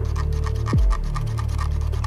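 Background electronic music with a deep bass and a falling bass slide about three-quarters of a second in. Under it runs a quick, even series of ticks from the Delux M800 gaming mouse's scroll wheel as it is rolled through its detents.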